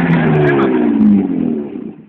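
BMW E36 325 engine revving hard, held at high revs, then dropping away with falling pitch in the last second.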